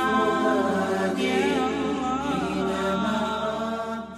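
A cappella vocal chant in the style of an Islamic nasheed, several layered voices holding long, gently wavering notes as a logo jingle, beginning to fade near the end.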